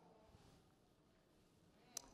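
Near silence: faint room tone, with one short sharp click near the end.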